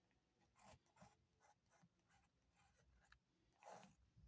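Faint scratching of a ballpoint pen writing on paper, in a series of short strokes, the loudest near the end.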